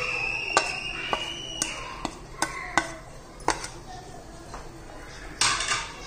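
A metal spoon clinking against a steel pan and plate, about seven sharp, irregular taps as cardamom powder is scooped and knocked into the pan, followed by a short scrape near the end. A high steady whine sounds behind the first taps and fades out about a second and a half in.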